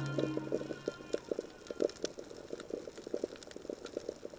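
Underwater sound on a coral reef: a fast, irregular crackle of small clicks and pops, with the tail of background music fading out in the first second.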